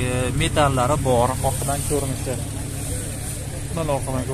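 People's voices talking during roughly the first half, over a steady low hum.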